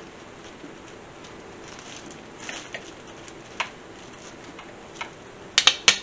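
A slow cooker's glass lid and its plastic locking clips being handled and latched: a few faint clicks, then a quick run of three or four sharp clicks near the end as the clips snap shut.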